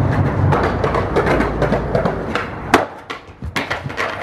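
Skateboard wheels rolling over concrete, then the board clattering down onto the pavement in four or five sharp knocks in the last second and a half, landing upside down after a failed trick on the stairs.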